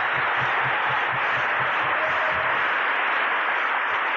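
Large audience applauding: a dense, steady wash of clapping.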